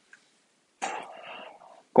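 A man clears his throat once, a short noisy rasp starting a little under a second in and fading over about a second.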